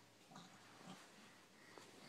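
Near silence, with two faint, brief noises from a seven-month-old baby about half a second and a second in.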